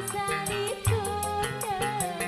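A woman singing into a microphone with a live band, her melody wavering over a bass line and a fast, even beat.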